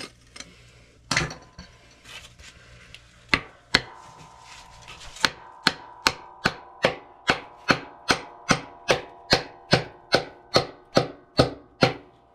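Claw hammer striking the cleanout plug of a cast-iron house trap: a few scattered blows, then from about halfway a steady run of sharp, ringing metal strikes, about two and a half a second. The trap is being knocked open to get at what looks like a trap stoppage.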